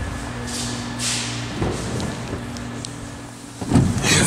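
A steady low hum with rustling and footsteps as the camera is carried, then a thump shortly before the end.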